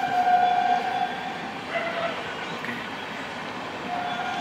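A horn sounding a long steady note that stops about a second in, then a brief, slightly lower blast near two seconds.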